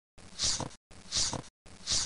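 A person's short breathy laughs through the nose, three in a row about three-quarters of a second apart, each cut off sharply into silence.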